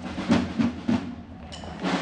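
Procession drums beating a few strokes in the first second, then falling quiet for a moment, with a short high-pitched tone near the end.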